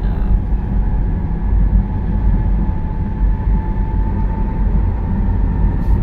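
Steady road and engine noise inside a car cruising on a motorway: a constant low rumble with a faint steady whine above it.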